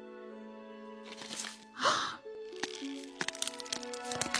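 Eggshells cracking as dinosaur eggs start to hatch: a quick run of sharp cracks and crackles in the second half, over soft music with long held notes. A short pained "ow" about two seconds in.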